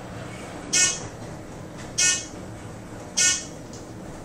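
A short, buzzy electronic beep sounds three times, about every 1.2 seconds, from a scenic Otis traction elevator's floor-passing signal as the car climbs, over a steady low hum of the moving car.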